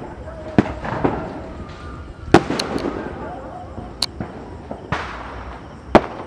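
Firecrackers going off: about eight sharp bangs at irregular intervals, each with a short echo, the loudest a little before halfway through.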